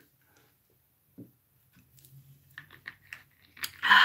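A person drinking soda straight from a two-liter plastic bottle: a few soft clicks and gulps, then a loud breathy exhale near the end as the drink finishes.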